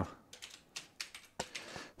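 Computer keyboard being typed on: a quick, uneven run of about eight light key clicks.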